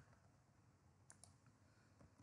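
Near silence: faint room tone with two soft clicks about a second in, as a presentation slide is advanced.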